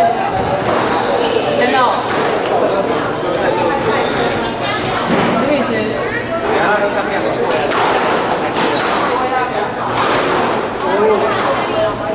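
Voices chattering in an echoing hall. From about five seconds in come sharp impacts about a second apart: a squash ball being struck by rackets and hitting the court walls during a rally.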